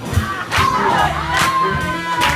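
A live swing big band of horns, piano, string bass and drums playing at a steady beat, with a long held whoop from the crowd rising in about half a second in and sagging slowly over the music.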